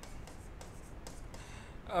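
Faint scratching and light taps of a stylus writing on a touchscreen display, over low room hiss.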